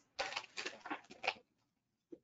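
Soft rustling and handling sounds of craft materials being moved on a tabletop: a fabric hammock and a plastic bag of metal rings. A few short scraping strokes come in the first second and a half, then it falls quiet.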